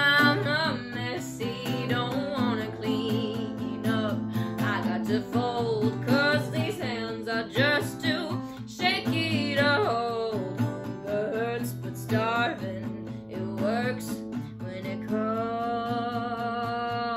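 A woman singing over a strummed acoustic guitar, her voice moving through the melody and settling into a long held note near the end.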